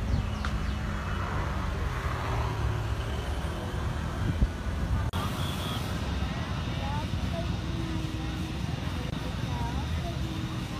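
Jet airliner engines running with a steady low rumble as the airliner moves along the runway. A single sharp click comes just before halfway, and the sound changes abruptly about halfway.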